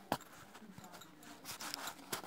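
Faint rustling and rubbing of paper as a handmade journal's tags and pages are handled, with a short sharp click just after the start.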